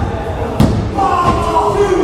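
A referee's hand slapping the wrestling ring canvas once, about half a second in, as he counts a pinfall, with people's voices shouting over it.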